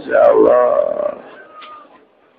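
A person's voice drawing out a wordless call whose pitch rises and falls, loud for about a second, then fading away.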